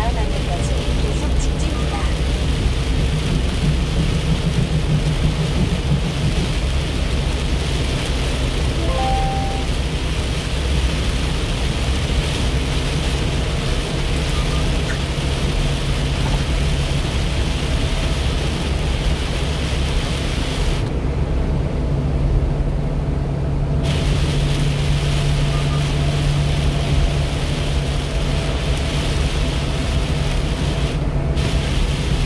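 Steady road noise inside a truck cab driving in heavy rain: engine and tyre rumble on the wet highway under a hiss of rain and spray on the windshield. The high hiss drops away for about three seconds about two-thirds of the way through.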